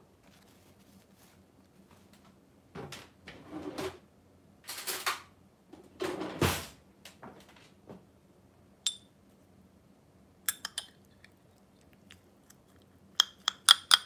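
Metal spoon clinking against a small porcelain cup while stirring a dressing, with a quick cluster of sharp clinks near the end. Earlier come a few rustling handling noises and light knocks as the cup and ingredients are moved about.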